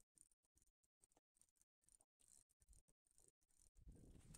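Near silence: faint background noise that keeps cutting in and out.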